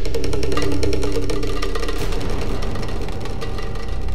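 Dramatic background music: rapid, even ticking percussion over a low steady drone, with a held chord that stops about two seconds in.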